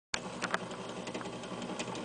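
Portable record player running with its tonearm not yet on the record: a steady mechanical hum from the turntable motor, with a few light clicks from the mechanism.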